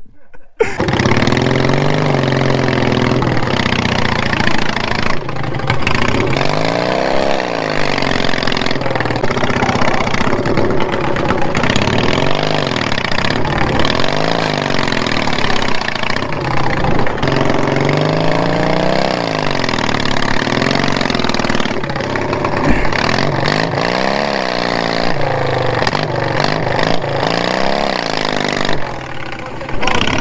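Small engine of a modified riding lawn mower, revving up and down over and over as it is driven through mud.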